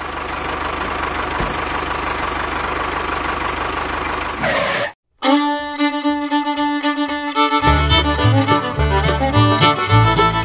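A miniature tractor's motor running steadily for the first five seconds, then cutting off abruptly. After a moment's silence, fiddle-led background music in a bluegrass style starts, with a bass line joining a couple of seconds later.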